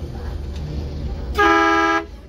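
Low engine rumble aboard an amphibious tour bus, then a short, loud horn blast of about half a second near the end.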